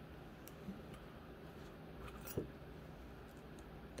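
A few faint clicks and ticks of wire and glass and stone beads being handled against a metal hoop, the sharpest a little past two seconds in, over a low steady hum.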